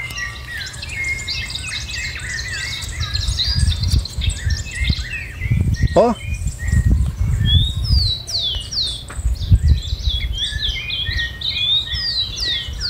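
Several birds chirping and calling, with many short high chirps throughout and a run of quick falling chirps in the second half. Irregular low rumbling noise underneath, loudest in the middle.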